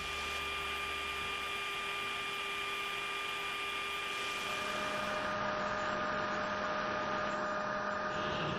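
Steady jet aircraft noise in flight: an even rushing noise with a few steady whining tones over it. A new, lower tone joins about halfway through.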